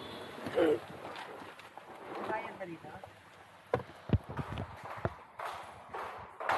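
Brief, indistinct voices, with a few sharp clicks or knocks in the second half.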